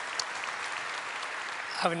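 Audience applause, a steady clatter of many hands clapping that eases off near the end as a man begins to speak.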